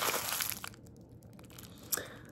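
Crinkly white wrapping crumpled in the hands as a toy is unwrapped; the rustle dies away about half a second in, with a short click near the end.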